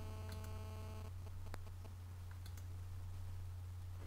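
Steady low electrical hum with a few faint computer-mouse clicks, the clearest about a second and a half in, as a drop-down menu item is picked. A faint buzz above the hum stops about a second in.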